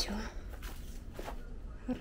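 A woman's voice trailing off at the start, then a few faint scuffs and crackles over a low steady rumble on the microphone.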